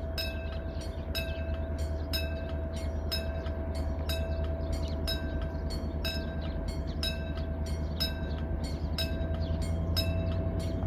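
Korail 7500-class diesel-electric locomotive pulling a passenger train, its engine a steady low rumble that grows slightly louder as it approaches. A sharp high ringing repeats about every half second over the rumble.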